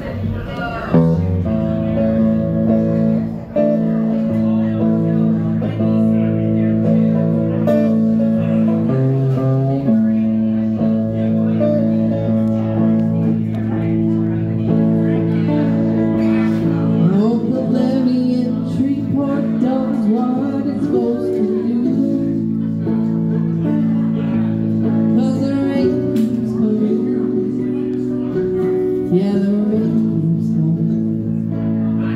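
A small live band starts a song about a second in: electric guitar out front over ukulele, upright bass and drums. Singing joins in a little past halfway.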